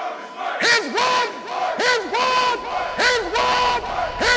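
A quick run of loud, pitched shouted cries, about two a second, each bending in pitch, over a held tone.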